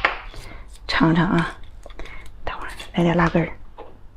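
Speech: a woman's voice in two short phrases about two seconds apart, with faint clicks between them.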